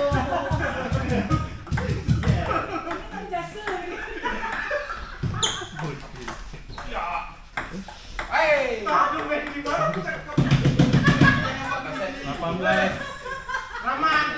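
Table tennis ball clicking off bats and the table in a rally, a run of short sharp taps, with voices talking over it.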